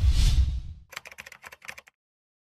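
Logo-animation sound effects: a swelling whoosh with a deep low rumble, loudest in the first half-second. From about a second in comes a quick run of about a dozen keyboard-typing clicks, as of text being typed out.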